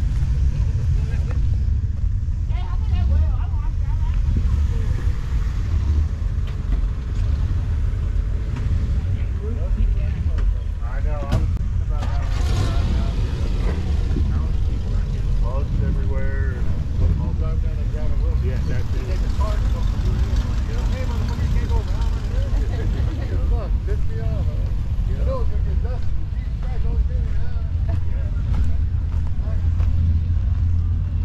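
Low, gusting wind rumble on the microphone, with the faint, indistinct chatter of people talking in the background.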